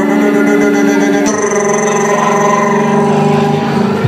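Live acoustic performance: long held notes from the singer's voice over acoustic guitar, shifting to a new note a little past a second in and letting go shortly before the end.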